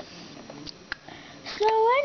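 A couple of soft clicks from small plastic toy figures being handled, then a child's voice saying a drawn-out, rising "So" near the end.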